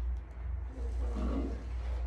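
A steady low hum, with a short low vocal sound from a person about a second in.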